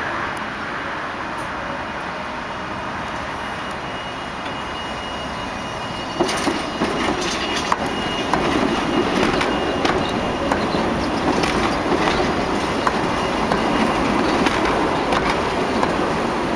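Articulated Tatra K2 tram passing close by from about six seconds in: a rolling rumble with scattered sharp clicks of steel wheels over rail joints. Before it arrives there is only a steadier, quieter rail-yard background.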